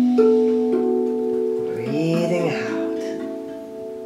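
RAV Vast steel tongue drum played softly by hand: a few single notes, each ringing on and overlapping the last while the sound slowly fades. A short voiced sound, a person's voice, comes about halfway through.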